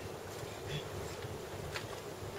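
Room tone of a hall: a steady low buzzing hum, with a few faint clicks.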